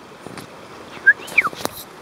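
Alaskan Malamute giving two short, high whines about a second in, the second falling in pitch.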